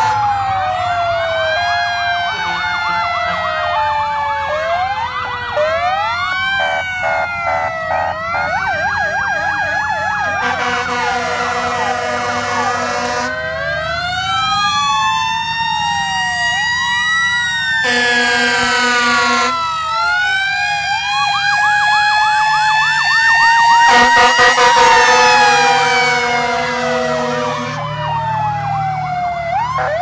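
Several fire engine and ambulance sirens sounding together, their wails and yelps rising and falling over one another as the convoy moves slowly along the street. Long steady blaring blasts break in a few times, and the sound is loudest about two thirds of the way through.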